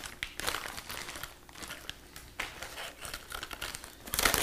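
A metallic anti-static bag and plastic parts bags crinkling in irregular bursts as they are handled.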